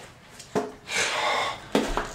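A cardboard shipping box being handled as a heavy five-gallon plastic bucket is pulled out of it: a sharp knock about half a second in, a longer rustle of cardboard, then another short knock near the end.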